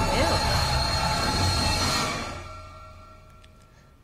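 Loud horror sound effect with a music sting from a TV episode's soundtrack: a dense screeching rush over a deep rumble, holding for about two seconds, then fading away over the next two.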